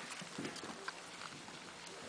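Havanese puppies' paws and claws tapping and scrabbling on a hardwood floor as they play: faint scattered taps, a few more in the first second.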